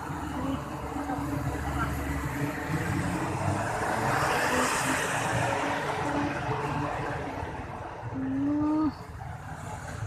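City street traffic: cars and motorcycles passing, with one vehicle swelling loudest about four to five seconds in. Near the end a person hums a short low note.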